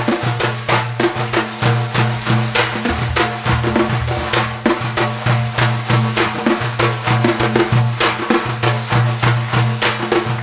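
A daf, the large Persian frame drum, struck in a quick, steady rhythm of several strokes a second over a low held drone, as part of an ensemble playing folk music.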